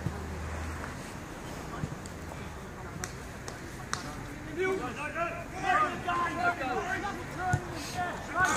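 Players' voices calling on an outdoor football pitch, fainter than the nearby sideline talk, over steady outdoor background noise. The calls come in the second half; the first half has only the background and a few sharp ticks.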